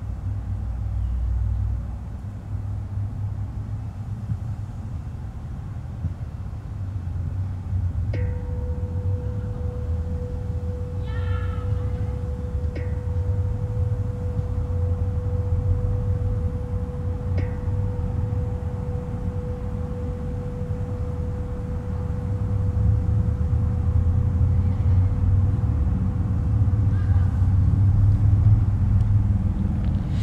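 Low, steady rumble of distant road traffic. A faint steady tone holds from about eight seconds in until near the end, with a few faint ticks and a brief pitched call around eleven seconds.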